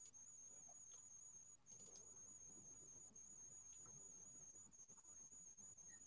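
Near silence: the quiet line of an online call, with a faint steady high-pitched whine.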